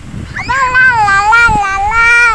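A single high-pitched, drawn-out cry that starts about half a second in and holds with a wavering pitch.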